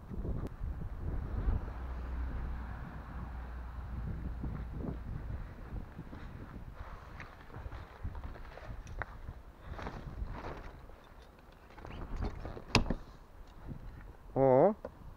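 Low wind rumble on the microphone, with rustling and knocks as a beach umbrella's fabric canopy and pole are carried and handled, and one sharp click near the end.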